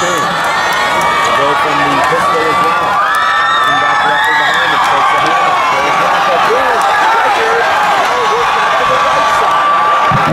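Football-game crowd shouting and cheering, many voices at once, with no single voice standing out.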